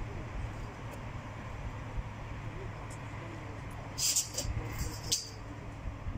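Hydraulic tail lift lowering a truck's rear door-ramp, with a steady low mechanical hum and a few short hissing sounds about four to five seconds in.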